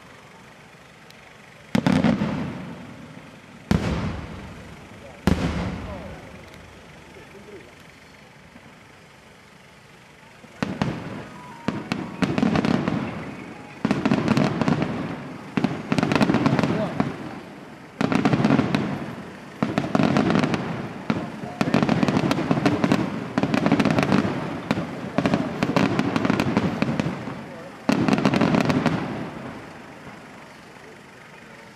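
Aerial fireworks shells bursting: three separate loud bangs, each trailing off, in the first five seconds, then a lull. From about ten seconds in comes a rapid, dense run of bursts with crackling that ends shortly before the end.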